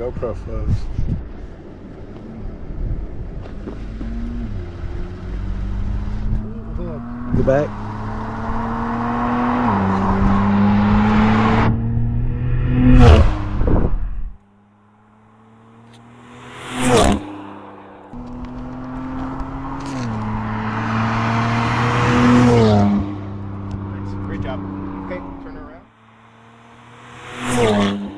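A performance car's engine accelerating hard through the gears, its pitch climbing and dropping back at each upshift, about three shifts per run. The sound cuts off abruptly twice and a fresh acceleration run begins.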